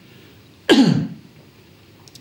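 A man gives one short throat-clearing cough about three-quarters of a second in, its pitch falling away.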